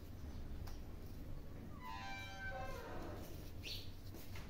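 A single high-pitched call about two seconds in, roughly a second long and falling in pitch, over a steady low hum.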